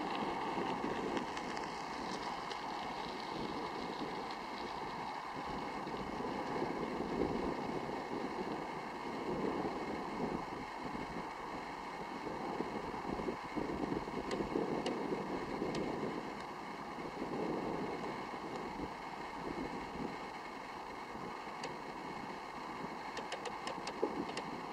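Distant freight train, a steady low rumble as it approaches from far off.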